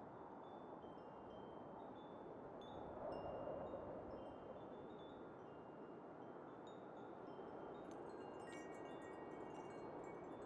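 Faint chime tones ringing at several different pitches, scattered and unhurried, coming a little more often near the end, over a soft steady hiss.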